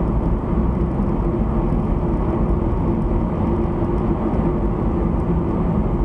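Steady road and engine noise heard from inside a moving car's cabin, with a low steady hum running under it.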